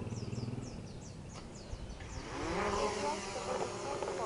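Hubsan Zino quadcopter's motors spinning up about halfway through: a rising whine of several tones that levels off into a steady hum as the drone lifts off and hovers.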